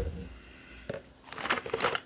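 Handling noise as a plastic skincare tube is put down: a soft thump at the start, then a short crinkling rustle in the second half.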